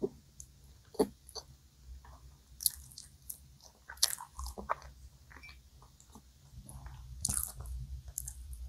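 Close-miked chewing of a chocolate brownie donut: soft, moist mouth sounds with sharp lip and tongue clicks a few times, and a louder burst near the end.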